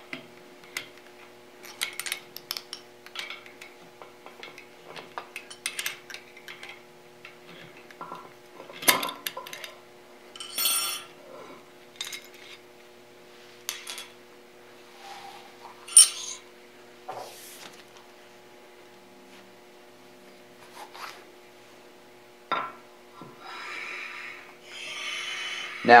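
Steel 1-2-3 blocks, an angle block and a cast spindexer being unbolted and moved about on a surface plate: scattered metal clinks, clicks and short sliding scrapes. Sharper knocks come about nine seconds in and again near sixteen seconds.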